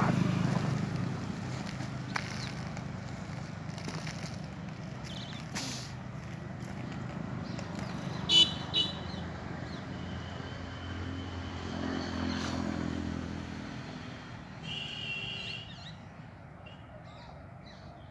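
Low, steady hum of a distant engine, loudest at the start, fading, then swelling again about twelve seconds in, with two brief high chirps.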